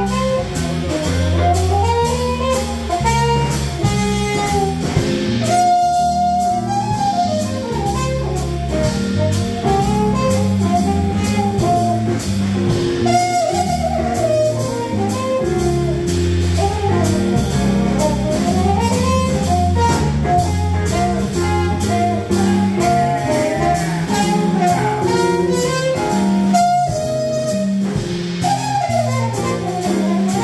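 A jazz combo playing live: a horn carries a winding, gliding melody over walking electric bass, electric keyboard and a drum kit keeping time.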